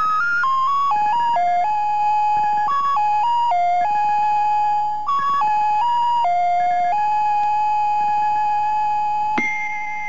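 Opening theme music: a single-line electronic synthesizer melody stepping from note to note, settling on a long held note. Near the end it jumps to a higher held note that begins to fade.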